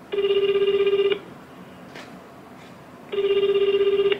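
Japanese telephone ringback tone played through a smartphone's loudspeaker: two one-second bursts of a low fluttering tone, about two seconds of quiet between them. The line is ringing and the call has not yet been answered.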